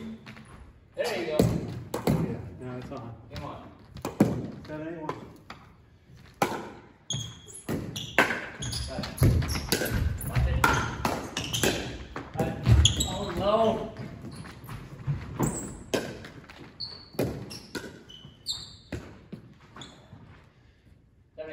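Pickleball rally: paddles striking a hard plastic pickleball in quick, irregular exchanges, with the ball bouncing on a hardwood gym floor. The hits echo in the large gym.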